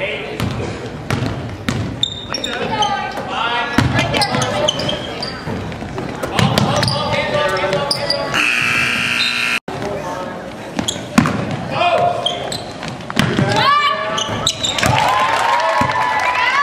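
Gym sound of a basketball game: a basketball bouncing on the hardwood floor with other sharp knocks and footfalls, and players and spectators calling out. A steady tone lasting about a second and a half sounds a little past halfway.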